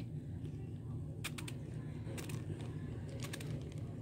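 A finger-pump bottle of spray-on butter squirting onto a slice of bread in short spritzes: one about a second in, another around two seconds, and a quick cluster near the end, over a low steady hum.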